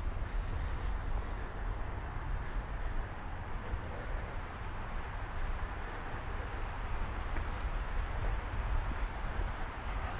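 Steady low rumble with an even hiss from a camera microphone carried at a fast walk along a dirt trail: movement and handling noise.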